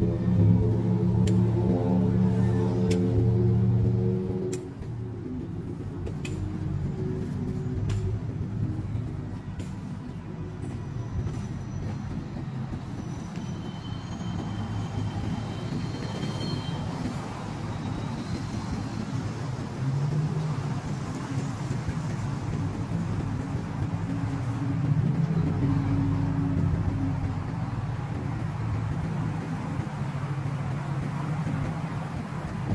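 Music for about the first four seconds, then cut off, leaving steady city street traffic noise. A vehicle's engine hum comes up about twenty seconds in and lasts several seconds.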